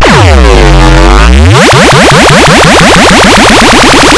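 Heavily distorted, clipped electronic audio with pitch-warping effects: a low, buzzy tone dives and swoops back up over the first second and a half, then breaks into fast, repeated pitch wobbles.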